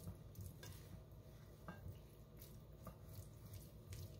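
Near silence: faint soft strokes of a silicone pastry brush spreading mayonnaise over boiled corn cobs, with a few faint light ticks over a low steady hum.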